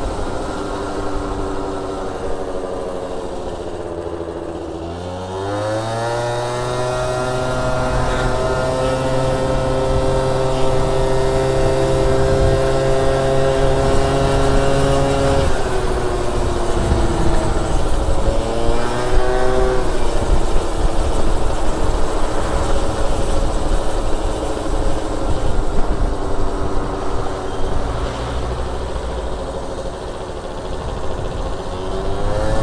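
Gilera Stalker 50 cc two-stroke twist-and-go scooter engine heard from the rider's seat. It eases off at first, then the throttle is opened and the pitch climbs quickly and holds steady while the scooter gathers speed. About halfway through it drops off, climbs briefly again, then settles at a lower steady pitch.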